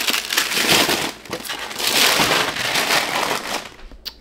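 Baked cookies being scraped off a parchment-lined baking sheet into a trash can: a dense run of paper crinkling, scraping and crunching that dies away near the end.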